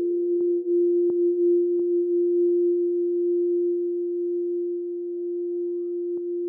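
Ambient synthesizer music holding a single steady, pure-sounding tone, with a faint upward glide near the end.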